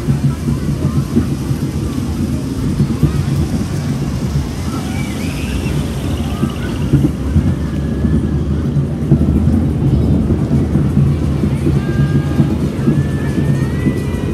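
Fairground ride car running along its track with a steady low rumble, mixed with fairground music and distant voices.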